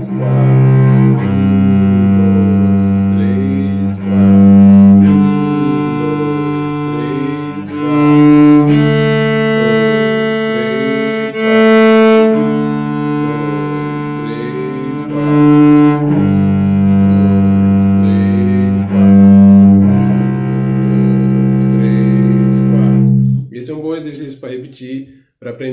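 Solo cello playing a slow bowing exercise: long sustained notes of three beats alternating with short one-beat notes played with a faster bow to win back bow length, the short notes coming out louder. The notes move across the strings and the playing stops just before the end.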